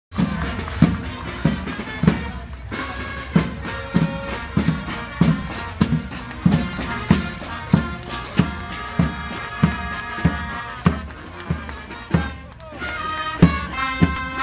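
A marching band playing a tune on trombones and other brass over a steady bass drum beat, about one and a half beats a second, with hand cymbal crashes.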